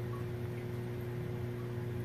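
Steady low hum with an even hiss underneath, unchanging throughout: the running pumps and filtration of a large aquarium.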